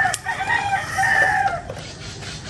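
A rooster crowing once, a single long call of about a second and a half.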